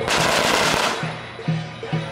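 A string of firecrackers going off in a rapid crackling burst for about a second, then cutting off. Under it runs rhythmic procession music with a steady beat of about two a second.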